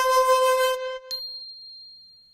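Intro music ending on a held note that stops about a second in, followed by a single high ding that rings out and slowly fades.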